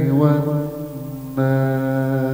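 A man chanting Qur'anic recitation (tilawah) in a melodic style. His voice slides and wavers through the first second, then holds one long steady note from about one and a half seconds in.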